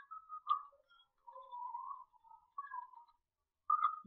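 Faint computer keyboard typing: short, uneven runs of key taps that come and go.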